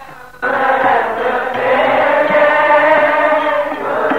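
A group of voices singing a kirtan line together in unison, coming in suddenly and loudly about half a second in, after a lone voice fades. The sound is dull and low-fidelity, with nothing in the upper treble.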